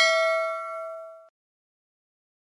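Bell-chime 'ding' sound effect for clicking a notification bell icon, ringing out with several steady tones. It fades and cuts off abruptly just over a second in.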